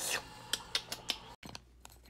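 A brief rustle, then a handful of light, sharp clicks and taps over about a second, followed by faint room tone.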